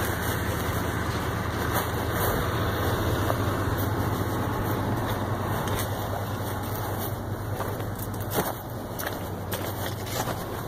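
A vehicle engine idling steadily with a low hum, under a rustling noise and a few knocks from the phone moving about in a shirt pocket.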